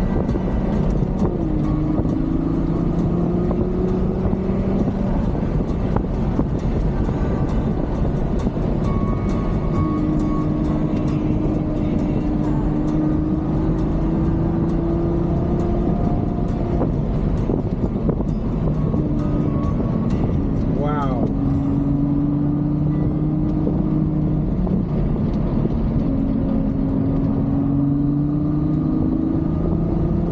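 Ferrari GTC4Lusso engine heard from inside the cabin while driving, over steady road noise. Its note climbs slowly in pitch over several seconds, then drops back, several times.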